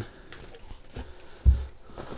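A plastic water bottle being pushed into the stretch side pocket of an Osprey Exos 48 backpack: faint rustling and light clicks of bottle against pack fabric, with one dull thump about one and a half seconds in.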